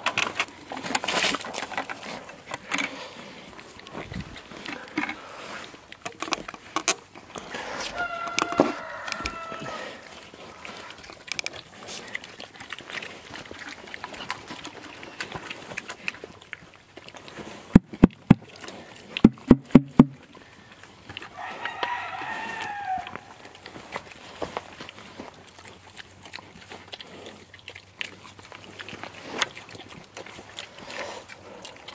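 Pigs chewing and rooting through food scraps in hay. A rooster crows twice in the background, about a third of the way in and again about three-quarters through. Just before the second crow comes a quick run of sharp knocks, the loudest sounds here.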